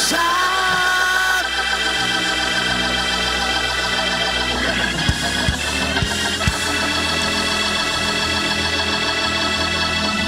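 Church band vamp carried by sustained electric organ chords on keyboard, with a few low thumps about halfway through.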